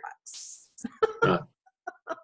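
A short hissing breath, then a brief hesitant 'uh' vocal sound about a second in, between stretches of talk.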